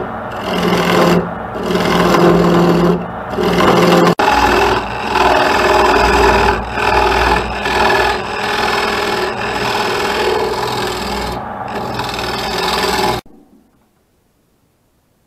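Wood lathe running while a hand-held turning tool hollows out the inside of a spinning maple plate: a loud, continuous rough cutting and scraping over a low motor hum, swelling and easing as the tool is worked. It stops abruptly near the end.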